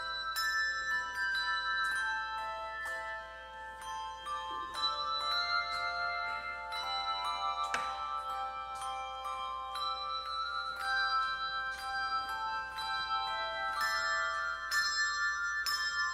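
Handbell choir playing a slow hymn tune, each struck note ringing on and overlapping the next.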